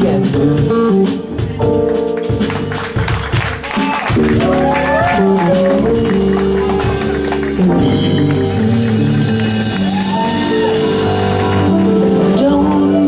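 Live jazz band of electric guitar, electric bass, keyboard and drum kit playing sustained chords, with a cymbal wash building through the second half.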